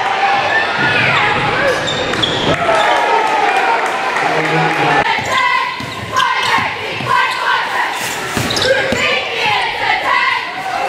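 A basketball dribbled on a gym floor, a run of bounces in the second half, amid voices and shouting from players and the crowd.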